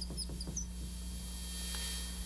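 Dry-erase marker squeaking on a whiteboard in short, high chirps while drawing wavy strokes, stopping under a second in. A steady low electrical hum runs underneath.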